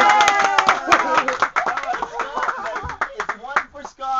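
Several people clapping in irregular, uneven claps, mixed with loud excited voices: applause for the winner of a balloon-blowing contest. The claps thin out near the end.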